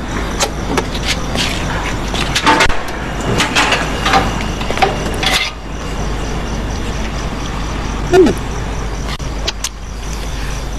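Car at a gas station, its engine running steadily, with scattered clicks and knocks of handling in the first half.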